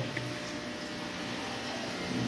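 Steady hiss and low hum of aquarium air pumps and filters bubbling in the tanks.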